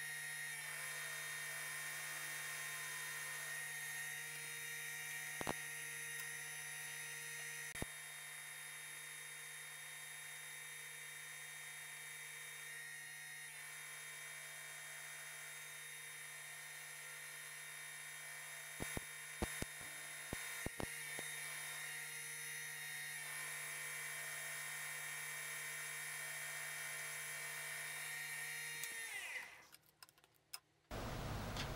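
Industrial sewing machine running with a steady whine as it sews tulle, with a few sharp clicks about a fifth of the way in and a quick cluster about two-thirds through; the motor winds down and stops near the end.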